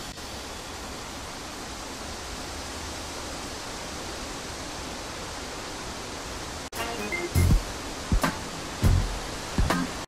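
Steady, even rushing of water, the nature-sound bed left after the music stops. It breaks off abruptly about seven seconds in, and several loud, short, low thumps follow.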